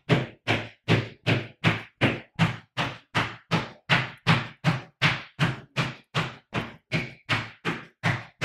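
Sneakered feet landing in rapid stiff-legged pogo jumps, each landing a flat whole-foot smack on the floor, evenly spaced at about two and a half per second.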